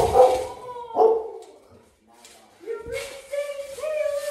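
A jumper lands on a trampoline with a sharp thump right at the start. Loud excited yells follow, ending in one long held yell near the end.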